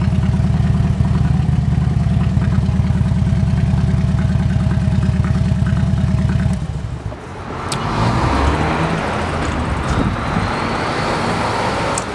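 2008 Harley-Davidson Ultra Classic's Twin Cam 96 V-twin idling with a fast, even low beat. About halfway through the low beat drops away and an even rushing noise takes over.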